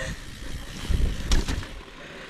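Mountain bike rolling over a bumpy, muddy trail, heard through a helmet-mounted camera: low rumbling knocks from the tyres and frame, loudest in the middle, with one sharp rattle about a second and a third in.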